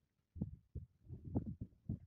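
Wind buffeting a handheld camera's microphone in irregular low, dull thumps, starting about a third of a second in.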